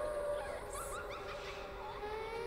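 Eerie horror-film score: a held, slowly gliding tone with fainter higher overtones, and a few short rising squeal-like notes about a second in.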